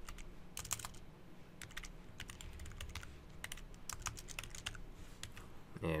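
Typing on a computer keyboard: clusters of quick, irregular keystrokes with short pauses between them.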